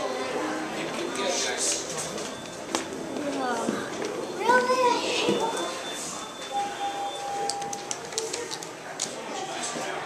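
Voices of several people talking, among them a child's voice, with a steady beep lasting about a second a little past halfway and a run of short clicks near the end.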